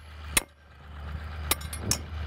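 A mallet striking the steel tines of a broad fork, three sharp blows, as the bent tines are hammered back into line.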